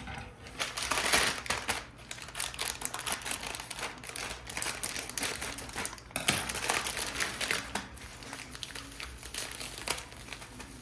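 Plastic packaging crinkling and rustling as a red plastic mailer bag is opened by hand and clear plastic wrapping is pulled off the contents, with a sharper crack about six seconds in.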